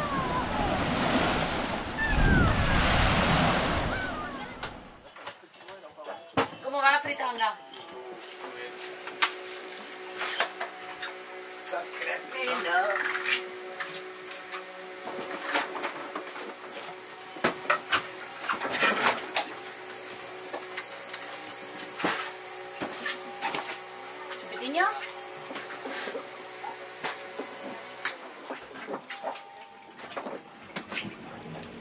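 Sea water rushing and splashing past a sailing yacht's hull, with wind, for about five seconds. Then quieter: sharp clicks and light knocks of glass and plastic lab equipment being handled over a steady faint hum, with a few brief voice sounds.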